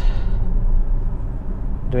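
Steady low road and tyre rumble inside the cabin of a moving Tesla Model S, an electric car with no engine note.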